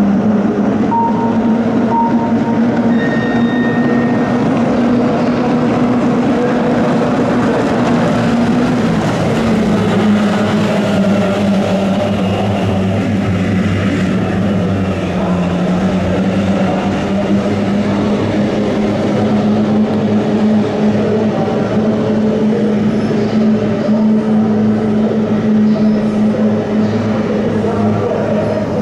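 Kyotei racing boats' two-stroke outboard engines running flat out together, a steady high drone. Its pitch drops about nine seconds in as the boats round the turn buoy, then slowly climbs again.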